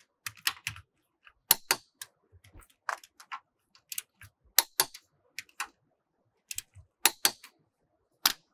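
Click-type torque wrench on a car's lug bolts: a sharp double click about every two to three seconds as each bolt reaches its set torque of 135 Nm, with lighter metallic taps from the socket being moved between bolts.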